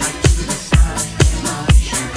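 Electro disco dance music from a DJ mix, with a steady four-on-the-floor kick drum at about two beats a second, off-beat hi-hats and synth lines.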